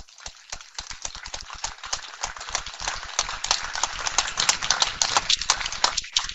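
Audience applauding. A few scattered claps thicken into steady clapping, which thins out near the end.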